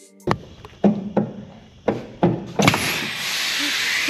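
A handful of sharp knocks and clanks, then, about two and a half seconds in, a loud steady hiss that starts suddenly: compressed air rushing out of the semi truck's air lines to the trailer.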